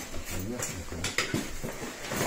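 Packing a stand-up paddleboard travel bag: nylon fabric rustling and shifting, with a few sharp clicks and knocks of the paddle and gear inside, bunched around the middle.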